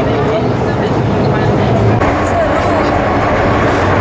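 Hong Kong MTR metro train running into the station behind the platform screen doors: a loud, steady low rumble, with people's voices over it.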